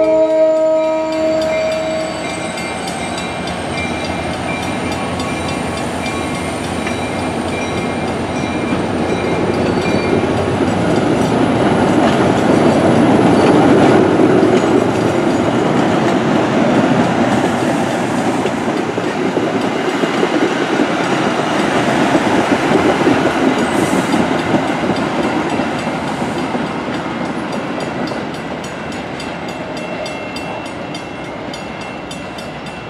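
MBTA commuter train passing close by: the locomotive's horn cuts off about two seconds in, then the coaches' wheels rumble and clatter over the rails, loudest around the middle and fading toward the end as the last car goes by.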